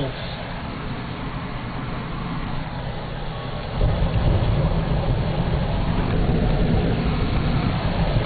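Road noise heard inside a moving car: a steady low rumble of engine and tyres, which grows louder and deeper about four seconds in as the car rolls onto a metal truss bridge deck.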